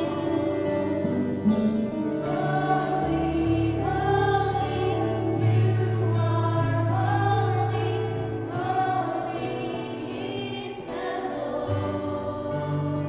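A small group of women's voices singing a gospel song together, accompanied by electric guitar, over long sustained low notes.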